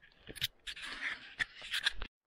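Footsteps on a rocky stone trail: a few sharp crunches and scrapes of boots on stone over a rustling hiss.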